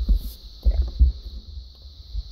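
Handling noise from a plastic Lego model being adjusted by hand: a low rumble with a few short knocks and clicks, the loudest about a second in.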